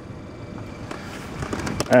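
Quiet, steady car-interior background, then a few light clicks near the end as the keys hanging in the ignition are handled.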